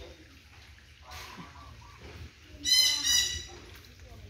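A bird gives two loud, harsh squawks in quick succession near the end.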